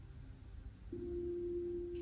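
Soft ambient background music: a single steady, pure low tone comes in about a second in and holds.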